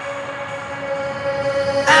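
Background music break: a held synth chord of steady tones with the bass and beat dropped out, and a short rising sweep near the end.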